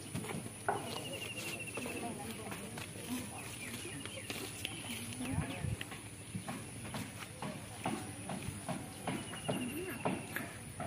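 Faint, indistinct voices of people talking, with scattered small clicks. A short, rapid high-pitched trill comes about a second in and again near the end.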